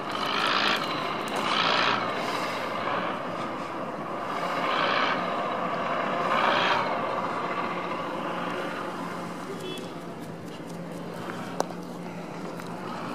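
Outdoor road traffic: several short swells of vehicle noise go by in the first half, then a faint steady low engine hum. A single sharp click comes near the end.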